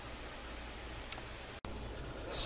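Low steady background hiss with no distinct source, broken by a brief dropout about one and a half seconds in.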